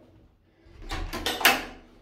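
A wooden plank door being swung, with its iron latch clicking loudly about one and a half seconds in.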